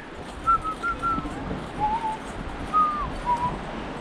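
A person whistling a loose tune of short, clear notes that slide up and down a little, over the steady rush of the stream.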